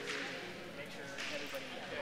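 Faint murmur of voices from people talking in a large hall, with no clear shot or impact.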